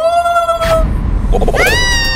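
Two rising, wailing cries: a shorter one at the start, and a higher one about a second and a half in that sweeps up steeply and then holds.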